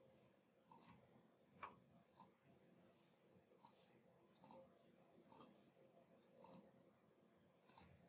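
Faint computer mouse clicks, about ten of them at irregular intervals and some in quick pairs, over near silence.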